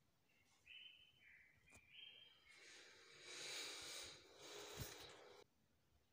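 Near silence, with a faint rushing noise that cuts off suddenly near the end.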